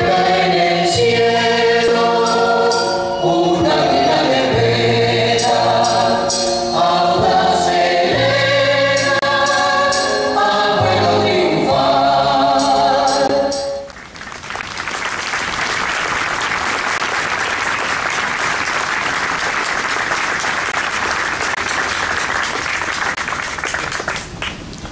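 A choral song with instrumental accompaniment that ends about halfway through, followed by a crowd applauding steadily.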